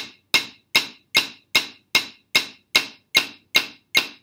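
Wooden drumsticks striking a rubber practice pad set on a snare drum, playing even single wrist strokes with rebound at 150 beats per minute, about two and a half strokes a second, all at the same loudness.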